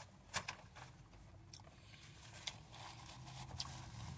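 Closed-mouth chewing of a crispy panko-breaded fish sandwich: a few faint, scattered crunching clicks. A low hum comes in near the end.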